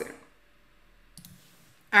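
A single short computer mouse click a little over a second in, over faint room tone, between two stretches of a woman's speech.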